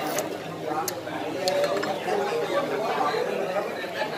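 Background chatter of several diners talking at once, with a few brief light clicks in the first second and a half.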